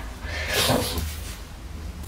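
A woman crying, with one breathy sniff about half a second in, over a steady low hum.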